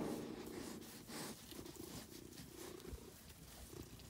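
Domestic cat purring close to the microphone, with a louder sound fading out in the first half-second.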